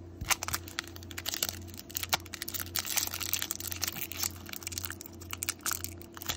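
A foil trading-card pack crinkling and being torn open by hand, with a dense run of irregular crackles and clicks; a steady low hum runs underneath.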